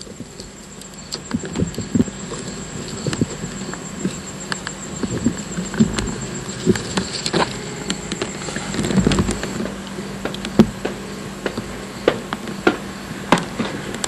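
Irregular knocks and taps of footsteps climbing the steps of a steel fire tower, over a steady low hum.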